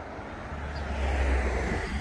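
A car passing on the road, its tyre and engine noise swelling from about half a second in and easing off near the end, with a low rumble underneath.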